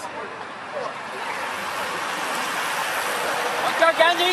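A large pack of road racing bicycles sweeping past close by: a rushing whir of tyres on asphalt and spinning hubs that grows louder toward the end. A voice calls out near the end.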